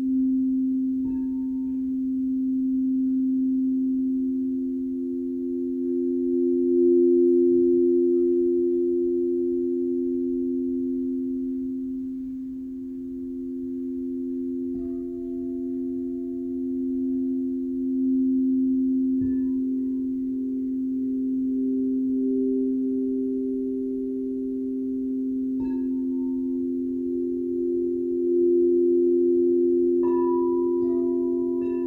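Frosted quartz crystal singing bowls played with a mallet: two low bowls sustain steady overlapping tones that swell and fade. Higher bowls ring in faintly a few times, after about a second, about halfway and near the end.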